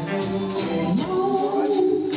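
Live blues band playing, with singing holding long notes over it; the pitch slides up about a second in.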